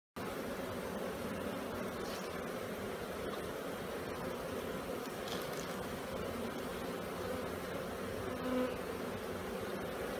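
Many honeybees on the exposed frames of an open hive buzzing in a steady, even hum.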